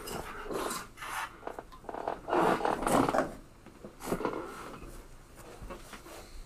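Irregular rubbing and scraping noises close to the microphone, loudest about two to three seconds in.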